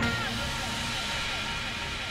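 Beatless passage of an electronic dance music DJ mix: the drums stop right at the start, leaving a hiss-like wash of noise with faint held tones that slowly fades.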